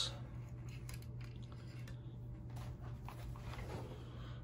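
Faint handling noises, a few light clicks and rustles, over a low steady room hum.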